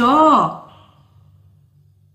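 A woman's voice finishing a short spoken phrase in the first half second, then a pause in which only a faint, steady low hum remains.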